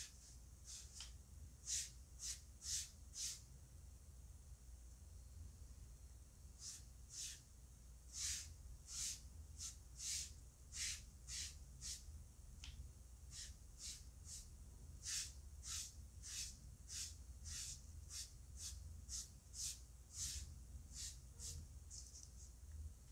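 A piece of foam sponge loaded with pink paint being stroked over a sheet of EVA foam: faint, brief swishes, about two a second, in several runs.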